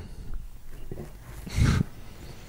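A man's short breathy laugh huffed into a close microphone, one puff of air about one and a half seconds in.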